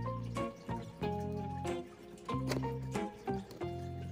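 Background music: a melodic track with sustained bass notes that change about every half second, over light, regular percussion.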